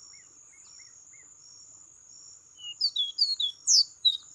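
Caboclinho (a Sporophila seedeater) singing a quick run of sharp whistled notes that slide downward, starting a little past halfway, over a steady high insect trill.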